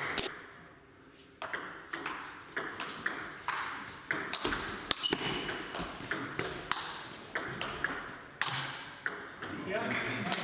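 A table tennis rally: the ball clicking off the bats and bouncing on the table, about two hits a second, starting about a second and a half in after a short pause. Voices come in near the end.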